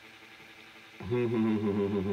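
A man's thinking 'hmm', one steady hummed tone that starts about a second in and is held for about a second and a half.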